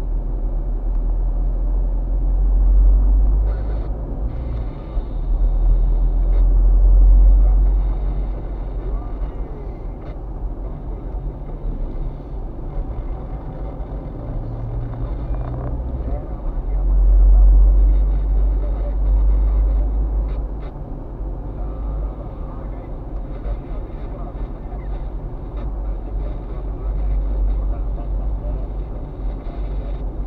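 Road and engine noise of a car driving, heard from inside the cabin: a steady deep rumble that swells and eases several times.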